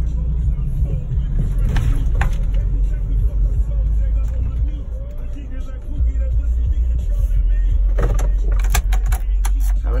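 Steady low rumble of a car heard from inside the cabin as it drives slowly and pulls in to park, with a few sharp clicks near the end.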